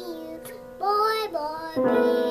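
A toddler singing a wavering line over notes ringing on an upright piano, with a new note struck near the end.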